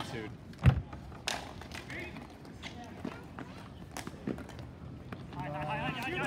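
Sharp knocks and clacks of sticks and ball on an outdoor ball hockey rink, the loudest a short thump just under a second in, with lighter clicks later. Players' voices carry faintly, and one voice comes in clearly near the end.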